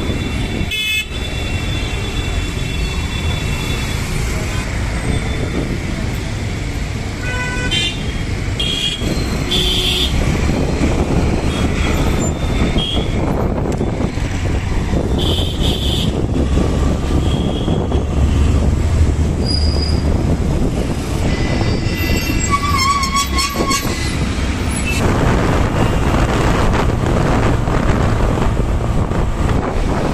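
Busy city road traffic: a steady rumble of engines and tyres, with vehicle horns tooting briefly several times.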